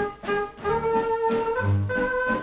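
Jazz-tinged dance band music with brass instruments, held notes over a deep bass note that returns about once a second.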